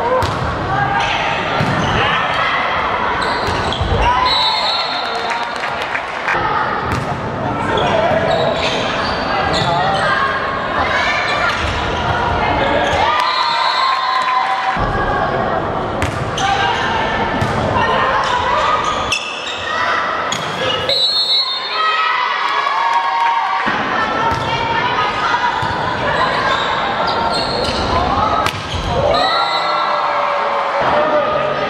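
A volleyball being struck during serves and rallies, with sharp ball-hit impacts scattered throughout. Players and spectators shout and call over the top.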